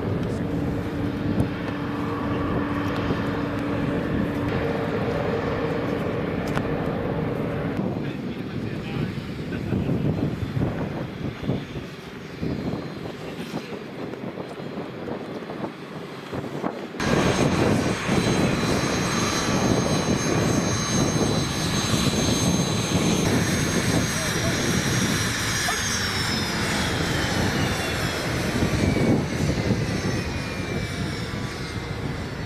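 Aircraft engines running on an airfield, with wind noise. About halfway through the sound jumps louder, and a high engine whine holds steady, then falls in pitch near the end.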